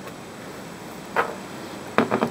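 Quiet room tone with one brief knock about a second in, from a glass canning jar being handled as its lid is screwed tight.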